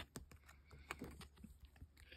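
Faint, scattered clicks of rigid clear plastic card holders tapping against each other as they are handled and turned over, the sharpest click right at the start, in near silence.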